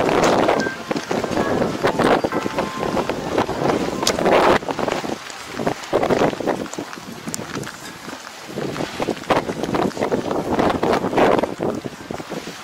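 Wind gusting over the camera microphone in open ground, a rough, uneven rushing that swells and drops every second or so.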